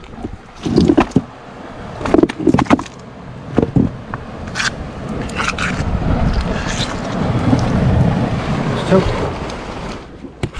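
A few sharp knocks and scrapes of a hand and feet on wet shore rocks in the first few seconds. Then a low rushing rumble of wind on the microphone swells for several seconds and fades near the end.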